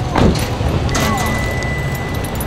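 Car running, heard from inside the cabin: a steady low rumble of engine and tyres. A thin, steady high tone comes in about halfway.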